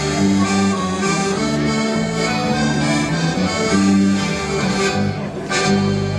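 Live dance band playing an instrumental passage, the accordion leading over electric and acoustic guitars.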